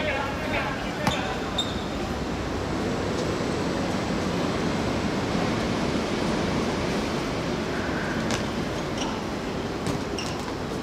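A football being kicked on an outdoor hard court: a couple of sharp knocks, about a second in and again near the end, over steady background noise, with players' distant shouts.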